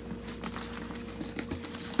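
A fabric tool bag handled and turned over by hand: scattered light knocks and clicks from its hardware and rustling of the fabric.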